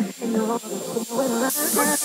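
Breakdown in a Romani dance mix: a melodic line plays with the bass and kick drum cut out. About one and a half seconds in, a white-noise riser swells in on top.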